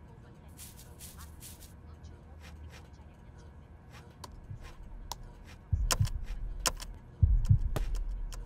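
Faint light clicks, then from about two-thirds of the way in, deep heavy thumps, the later ones coming in close pairs about a second and a half apart.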